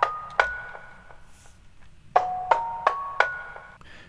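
A sampled metal lamp thump, pitched up and down into a melodic instrument, playing arpeggiated chords. There are two rising runs of four notes, one finishing just after the start and one about two seconds in, each note a short struck hit that rings briefly.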